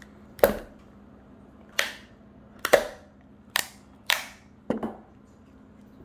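About six sharp snaps and pops of stiff plastic as the sealed inner lid of a sheet-mask tub is pulled free by its ring tab and pried off.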